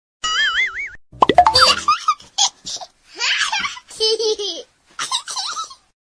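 A string of comic sound effects: a wobbling, warbling tone in the first second, a few pops and a quick rising glide, then a run of short chattering, voice-like clips that sound like squeaky laughter.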